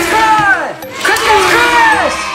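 An excited voice calling out "Criss cross! Criss cross crash!" in two long calls, each swooping up and down in pitch.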